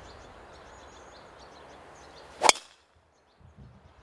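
A driver striking a golf ball off the tee: one sharp crack about two and a half seconds in, over a steady outdoor background hiss.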